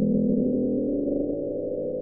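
The "Bloop", NOAA's 1997 hydrophone recording of a loud ultra-low-frequency underwater sound, played back as a steady low drone of stacked tones that cuts off abruptly right at the end. NOAA describes it as consistent with an icequake from ice calving off a glacier.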